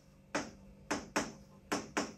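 A pen tip tapping and clicking on the glass of an interactive whiteboard screen as words are written, about six short, sharp taps in loose pairs.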